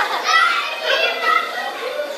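Children's voices calling out, a few short high-pitched calls.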